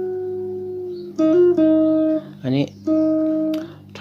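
Guitar playing a slow single-note lead line. A held note rings and fades, then a new note is picked about a second in, rises briefly in pitch and is held. Another held note follows near the end.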